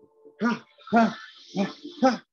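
A man's short voiced grunts as he throws shadowboxing punches, three in quick succession, with a hiss of breath from about a second in.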